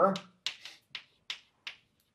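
Chalk striking and writing on a blackboard: about five short, sharp clicks, spaced irregularly, as words are chalked up.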